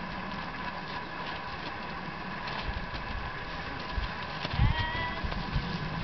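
Dull low thumps over a steady outdoor hiss, with one short rising animal call, bleat-like, about four and a half seconds in.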